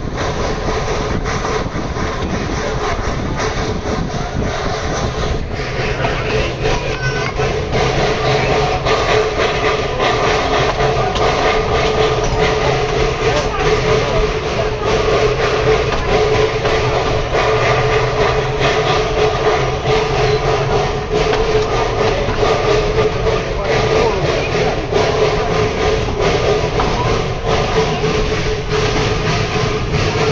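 Narrow-gauge train running along the track, its wagons' wheels rumbling and clattering steadily on the rails, with a steady hum that grows louder after the first few seconds.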